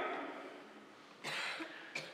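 The echo of speech dies away in a reverberant church, then about a second in comes a single short cough lasting about half a second.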